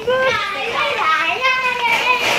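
A young boy's high-pitched voice making drawn-out, sing-song sounds, with the pitch gliding up and down between held notes.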